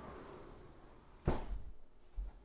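A single dull thump about a second in, over faint background noise.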